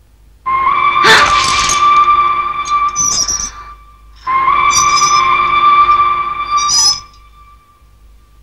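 A train whistle sounding two long blasts of about three seconds each, starting about half a second in and again at about four seconds. Each blast is a steady pitched tone with a rushing hiss behind it.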